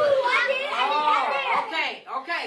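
Several children calling out at once, their voices overlapping.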